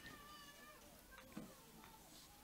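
Near silence: faint room tone, with a faint high wavering tone in the first second and a small click.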